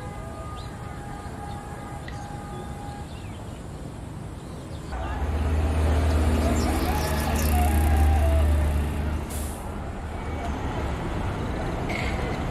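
A motor vehicle drives past close by: a low engine rumble that comes in suddenly about five seconds in, swells, and fades away after about nine seconds, over quieter outdoor background noise.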